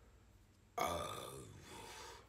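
A man's drawn-out, hesitant 'uh', starting abruptly about a second in and trailing off.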